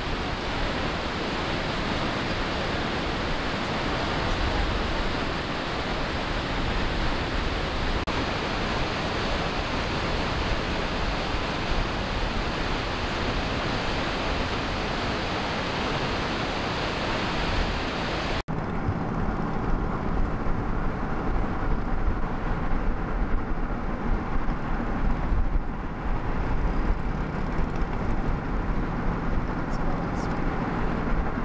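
Steady roar of Snoqualmie Falls, a large waterfall. About 18 seconds in it cuts suddenly to the road noise of a moving car, a steady low rumble of tyres and engine.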